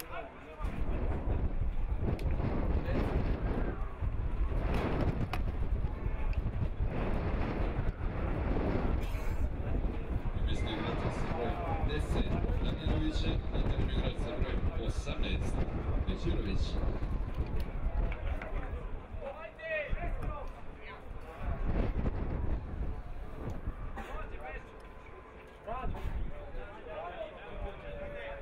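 Wind buffeting the microphone in a steady low rumble, with indistinct distant voices shouting now and then across an outdoor football pitch.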